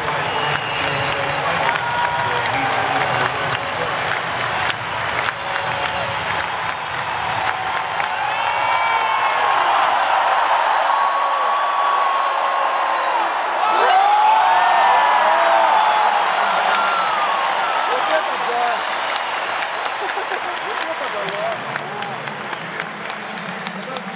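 Stadium crowd applauding and cheering, with many voices shouting over the noise. It swells about ten seconds in, is loudest around fourteen seconds, and eases off toward the end.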